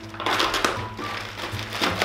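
Plastic mailer bag crinkling and rustling as it is cut open with a small knife, over background music.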